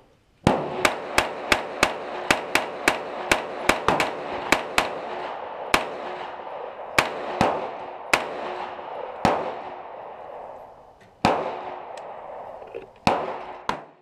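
Sig Sauer MPX 9mm pistol firing: a quick string of about fourteen semi-automatic shots at roughly three a second, then single shots spaced a second or more apart. Each shot trails off in a short echo.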